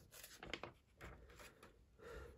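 Near silence with a few faint rubs and light clicks, as a plastic Lego brick model is turned in the hand.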